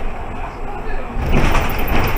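Mercedes-Benz Citaro G articulated city bus driving at about 40 km/h, heard from the driver's cab: a steady rumble of road and drivetrain noise, with a louder surge of rumbling noise about a second and a half in.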